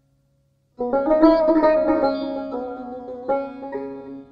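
Solo plucked string instrument playing a Persian classical phrase in the Afshari mode: after a short silence, a run of quick plucked notes starts just under a second in, with another attack a little past three seconds, the notes ringing and fading toward the end.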